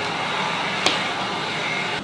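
Electric heat gun (paint stripper) running steadily, blowing hot air, with a single sharp click a little under a second in.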